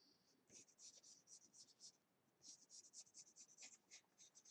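Colored pencil drawing a long line on a sheet of paper: faint, quick scratchy strokes in two runs with a short pause between them.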